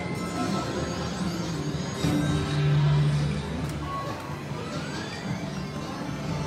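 Slot-machine music and electronic jingles over a busy casino din, with a louder stretch in the middle and a short rising electronic tone near the end as the reels spin again.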